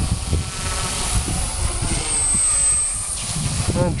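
Small electric RC helicopter (Walkera 4F200 with a Turbo Ace 352 motor and 18-tooth pinion) flying, its motor and rotors whining. A high whine swells and bends in pitch for about a second midway as the helicopter works under load. Gusty wind rumbles on the microphone.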